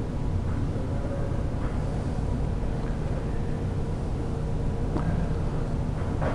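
Steady low rumble and hum of room background noise, with a few faint clicks.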